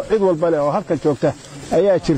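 A man speaking in Somali with a strong voice, pausing briefly in the middle.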